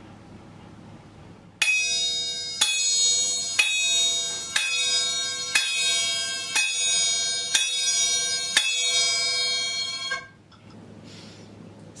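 Chappa, small Japanese hand cymbals, clashed eight times about once a second in the open 'chan' stroke: one cymbal swung against the other held fixed, struck a little softer than the full 'jan' stroke. Each clash gives a clear, bell-like ring that carries on into the next, and the ringing stops abruptly near the end.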